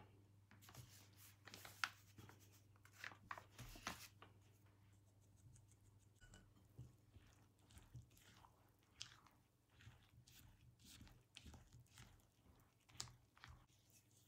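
Faint scraping of a spatula stirring and folding extra flour into thick grated-pumpkin cake batter in a ceramic bowl, with scattered soft clicks of the spatula against the bowl.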